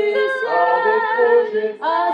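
Several voices singing together unaccompanied, holding long melodic lines in harmony, with a short break near the end before they go on.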